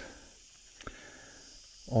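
Quiet outdoor background: a faint, steady, high-pitched insect drone, with one small click about a second in.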